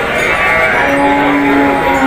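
Cattle mooing close by: one long call that settles into a steady pitch about a second in and holds to the end.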